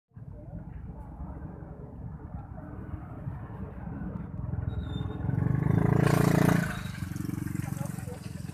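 Roadside street noise with a steady low vehicle rumble and people talking; a passing vehicle engine swells loudly about five seconds in and fades about a second and a half later.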